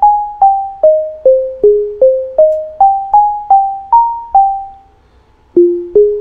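Chrome Music Lab Sound Waves keyboard playing a tune of single, clean synthesized tones, about two and a half notes a second, stepping up and then down in pitch, each fading quickly. The tune breaks off about four and a half seconds in after a slip, then one lower note sounds near the end.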